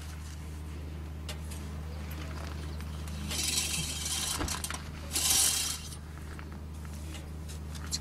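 Metal engine oil dipstick handled and wiped with a cloth rag, making two scraping swishes about three and five seconds in, over a steady low hum.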